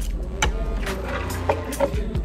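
Background music over a steady low hum, with three sharp clinks of a metal fork against a ceramic plate.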